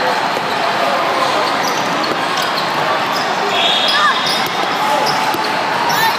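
Basketballs bouncing on a hard court amid a general hubbub of crowd voices, echoing in a large hall.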